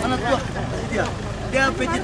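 People talking, over a steady low rumble.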